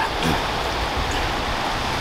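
Sea surf washing over a rocky shore, a steady rushing, with a brief laugh at the start.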